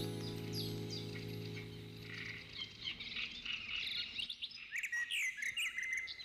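The song's final held chord fades away over the first two seconds or so, and from about halfway in birds chirp in many short calls that rise and fall in pitch, continuing to the end.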